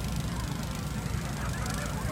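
Outdoor beach ambience: a steady low rumble with faint, distant calls that rise and fall in pitch, mostly in the second half.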